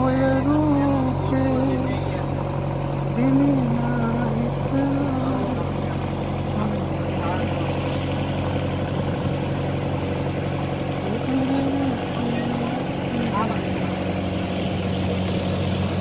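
A fishing boat's inboard engine running steadily under way, a constant low drone that holds the same pitch throughout.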